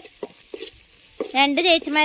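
Sliced onions frying in oil in an aluminium pot, stirred with a spoon: a faint sizzle for about the first second. Then a high-pitched voice comes in loud and carries on.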